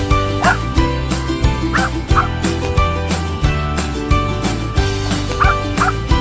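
Background music with a steady beat. Over it come a few short, high dog yips from dogs at play: one about half a second in, a pair around two seconds in, and a pair near the end.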